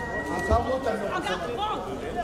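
A crowd of people talking over one another in a busy, overlapping chatter, with a brief low thump about a quarter of the way in.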